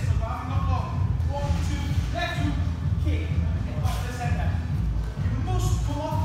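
An indistinct voice talking over background music with a steady low bass.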